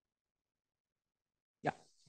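Dead silence, then a man briefly says "yeah" near the end.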